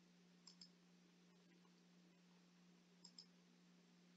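Two faint computer mouse clicks, each a quick double tick of press and release, about half a second in and about three seconds in, over near silence with a faint steady hum.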